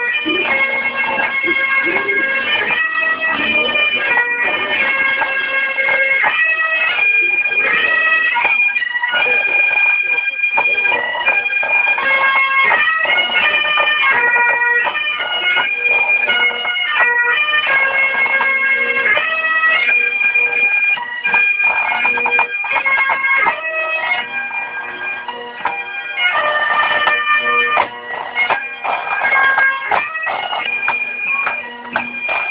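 A marching pipe band's Highland bagpipes playing a tune over a steady drone, getting somewhat quieter in the last third.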